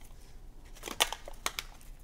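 Small plastic game tokens and a plastic bag being handled: faint crinkling with a few light clicks of tokens in the second half.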